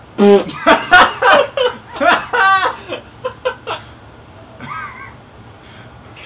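A man laughing out loud in a run of short bursts lasting about three seconds, then a brief faint vocal sound near the end.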